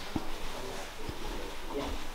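Quiet room tone with a low rumble, two soft knocks about a fifth of a second and a second in, and a faint voice near the end.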